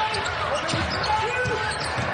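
A basketball being dribbled on a hardwood court, bouncing repeatedly, with voices.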